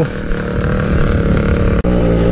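Small two-stroke motorbike engine running steadily, broken by a sudden momentary dropout near the end.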